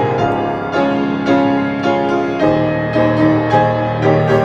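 Instrumental hymn music on piano, with a new chord or note struck about every half second.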